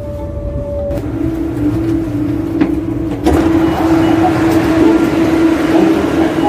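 Steady hum of a stopped ERL electric airport train at the station, a low drone with a rumble beneath it, which grows louder and fuller about three seconds in.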